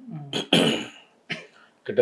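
A man clearing his throat and coughing, with the loudest cough about half a second in and a smaller one a little later.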